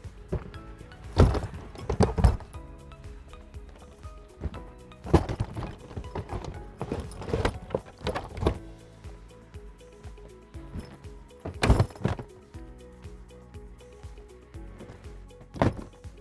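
Hard-shell suitcases thudding and scraping as they are loaded one by one into the boot of an Audi Q7: several separate thuds spread through, over background music.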